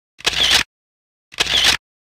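Two short, sharp edited-in sound effects, each about half a second long and a little over a second apart, with dead silence between them.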